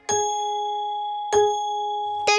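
Clock bell striking two: two ringing strokes about a second and a quarter apart, each ringing on steadily after the hit.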